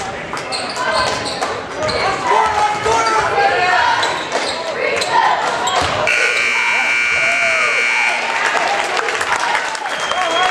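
Gymnasium crowd noise with many voices calling out, and a basketball bouncing on the court. About six seconds in, the scoreboard buzzer sounds as one steady tone for about two seconds.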